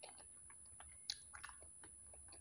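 Faint, wet chewing and mouth smacks from a mouthful of soft fried egg: a scatter of small clicks, the loudest about a second in.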